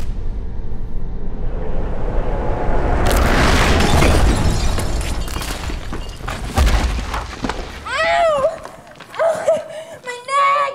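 Film sound effect of an explosion: a low rumble builds, then a sudden loud blast about three seconds in, with debris crashing and a long noisy decay, and a second deep hit a few seconds later.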